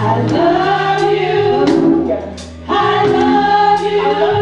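Church choir singing a gospel song over a steady bass and drums, with a short drop in the music a little past halfway.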